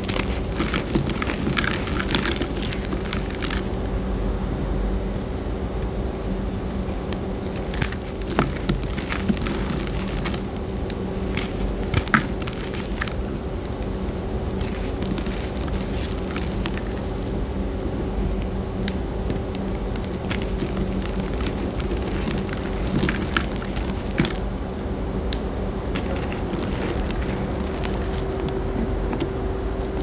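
Hands crushing and crumbling reformed gym chalk in a bowl of loose chalk powder: soft crunching and crumbling with scattered sharper cracks, the sharpest about twelve seconds in, over a steady low hum.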